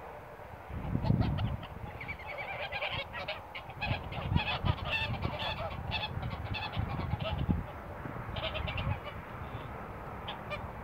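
A flock of domestic geese honking, many short overlapping calls that thicken into a chorus after the first couple of seconds and thin out near the end. Low thumps come through under the calls about a second in and again near the end.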